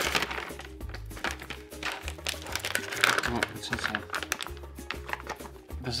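Plastic dog-treat pouch crinkling as it is handled and opened, many quick rustles, over steady background music.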